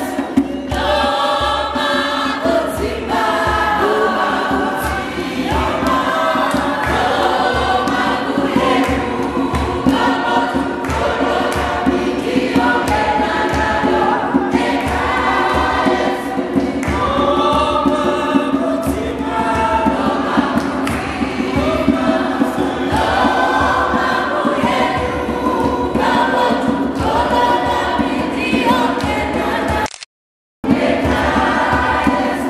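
A group of voices singing a gospel worship song together, choir-style.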